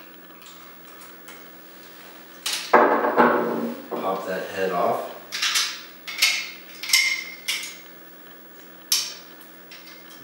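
Hand disassembly of a Hiblow HP-80 diaphragm air pump. The plastic chamber head is worked off the pump in a few seconds of scraping and handling noise, then a quick run of light metallic clinks, one ringing briefly, as the small housing screws are handled and set down, and a single click near the end.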